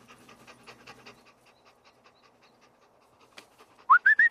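Dog panting in quick, even puffs that thin out after about a second. At the very end a whistle starts, sliding up in pitch and then wavering high, calling a dog.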